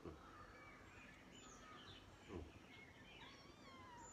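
Near silence, with faint thin bird calls and chirps in the background and one short, faint kitten mew about two seconds in.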